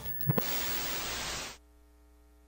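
A burst of television-style static hiss lasting about a second and a half, with two quick clicks near its start. It cuts off suddenly to a faint, steady electrical hum.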